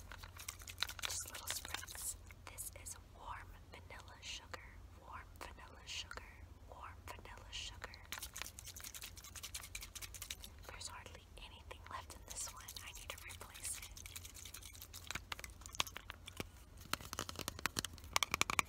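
Soft whispering over quick tapping and handling clicks from fingers on a small hand-held container.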